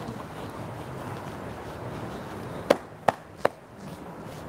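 Low room noise, then three sharp taps in quick succession, about a third of a second apart, in the second half.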